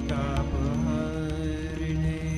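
Devotional Hindu chant music over a steady low drone; a melodic line slides down in pitch near the start.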